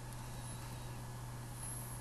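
Steady low hum with faint hiss: background room tone on the narration microphone.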